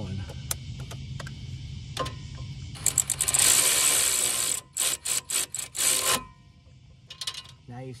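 Hand ratchet tightening a sway bar link nut: scattered clicks, then a fast run of ratchet clicking about three seconds in, followed by about six separate shorter strokes. After a short pause a few more clicks come near the end.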